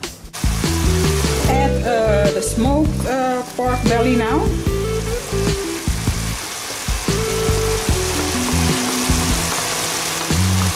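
Chicken pieces, onion and leek frying in a pan with raw smoked bacon added, giving a steady sizzle. Background music with held notes plays underneath.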